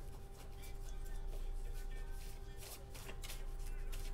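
A deck of tarot cards shuffled by hand: a long run of quick, light card flicks and rustles.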